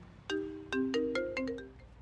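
Mobile phone ringtone: a quick melody of marimba-like struck notes that cuts off a little before two seconds in as the call is answered.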